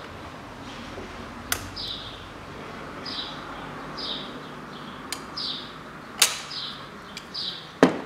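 A few sharp metal clicks of pliers working a hose clamp as an engine hose is refitted, the loudest about six seconds in. Short, high, falling chirps repeat about once a second behind them.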